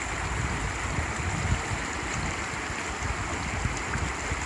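River water running over rocks in a shallow riffle: a steady rushing.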